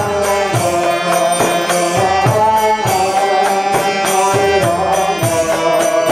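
Devotional kirtan: voices chanting a mantra in long held notes over a steady hand-drum beat and ringing hand cymbals.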